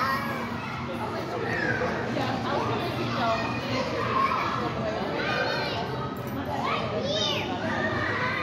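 Many children shouting and squealing over a constant din of voices in a busy indoor play hall, with a few high shrieks standing out about five and seven seconds in.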